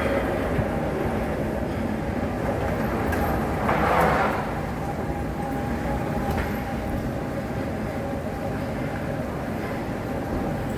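Busy airport terminal ambience: a steady low rumble with indistinct voices, and a louder rushing swell about four seconds in.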